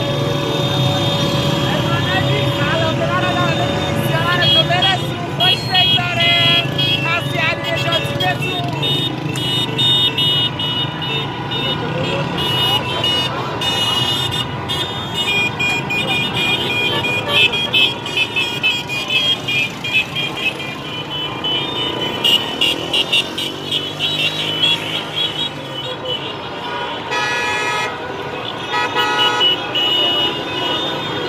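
Car horns honking in celebration over busy traffic, some held for several seconds and a run of short repeated toots near the end, mixed with people shouting. About two-thirds of the way through a vehicle passes close by.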